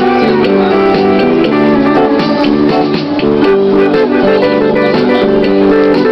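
Amplified electric guitar playing a melody of held, ringing notes that change pitch every fraction of a second.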